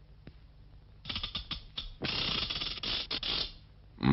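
An old barrel organ's crank being turned, giving a few clicks and then a dense mechanical rattle for about a second and a half, with no tune coming out: the organ won't play.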